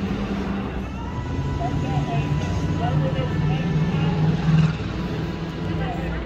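Steady low machine hum, unchanging throughout, with faint short chirps and distant voices over it.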